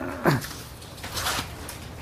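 Paper rustling as pages of a booklet are handled and turned, after a short sound that falls in pitch near the start.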